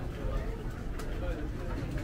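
Indistinct voices of passers-by in a narrow street over a steady low rumble, with one sharp click about halfway through.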